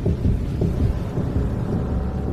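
Deep rumbling sound effect with rapid low pulses, the dramatic rumble that goes with dark power surging up in an anime scene.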